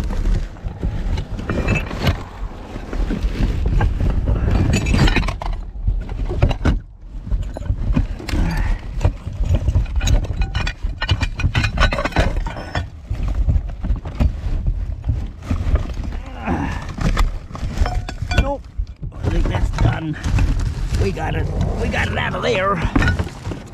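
Gloved hands rummaging through household rubbish in a bin: paper, plastic and cardboard rustling, with knocks as items are shifted. A heavy low rumble runs underneath.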